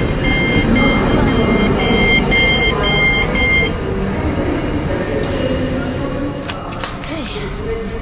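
Heathrow Express passenger-door beeper sounding after the door button is pressed: short beeps alternating between two pitches, about two a second, which stop after three and a half seconds as the doors open.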